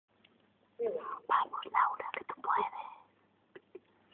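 Quiet voices talking in hushed, whispered tones for about two seconds, followed by a couple of soft taps near the end.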